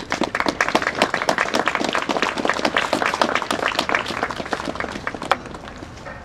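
Crowd applauding, many hands clapping at once, dying away near the end.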